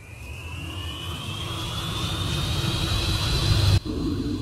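Wind rushing over a paraglider's action-camera microphone, growing steadily louder as the paraglider tumbles out of control. Over it a thin whistle climbs steadily in pitch. The sound cuts out briefly near the end.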